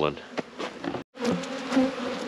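Honeybees buzzing around their hives, a steady hum that breaks off briefly about halfway and comes back louder.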